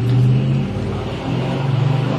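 A motor vehicle engine running with a steady low hum, which dips briefly near the middle and comes back slightly higher in pitch.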